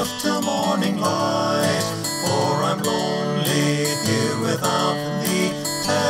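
Acoustic guitar strumming chords in a slow hymn accompaniment, an instrumental stretch of the hymn tune.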